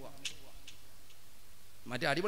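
A pause in a man's speech at a microphone, with three or four faint, short clicks in the gap; his voice comes back in just before the end.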